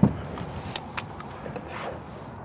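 A steel tape measure being handled during measuring: one sharp click at the start, then several lighter clicks and a soft scrape.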